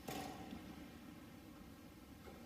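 Quiet church room tone, with one short sharp noise at the very start.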